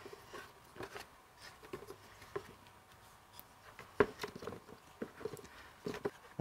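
Small wooden blocks being set down and shuffled inside an empty plastic mixing bucket: light scattered taps and scrapes, with a sharper knock about four seconds in and another near the end.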